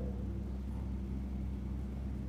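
Steady low hum with faint room tone and no other distinct sound.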